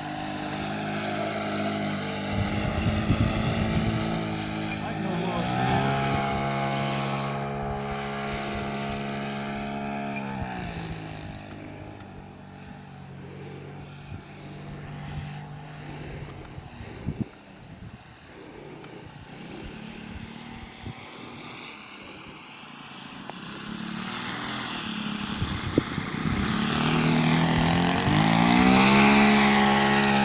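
Saito 100 single-cylinder four-stroke glow engine and propeller of a large RC J3 Cub model plane in flight. The note is loud and steady at first, falls in pitch and fades about ten seconds in, stays faint for a while, then rises and grows loud again near the end.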